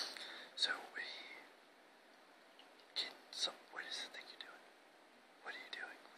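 Whispered speech in three short phrases with quiet pauses between.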